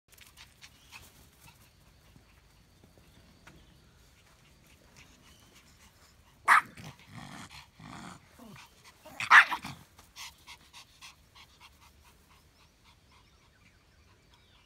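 Pomeranians barking and growling as they wrestle in play: a sharp bark about six and a half seconds in, growling after it, a second loud bark around nine seconds in, then a run of short, quieter yaps.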